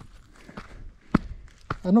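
Footsteps on a dry, rocky dirt trail: four even steps about half a second apart, the third the loudest.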